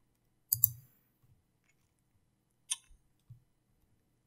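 Computer mouse clicking: a quick double click about half a second in, then two single clicks near the end.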